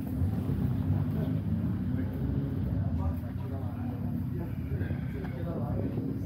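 Steady low rumble of a car engine running nearby, with faint chatter of people in the background.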